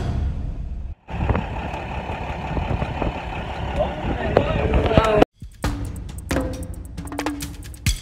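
Background music with a steady beat, broken by hard cuts about a second in and again past the middle. Between the cuts are about four seconds of the open safari vehicle's own sound: a running engine and wind noise, with faint voices.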